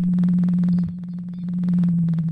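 Recorded whale call: one low, steady tone with a fine rapid pulsing in it. It dips in loudness about a second in and then swells again.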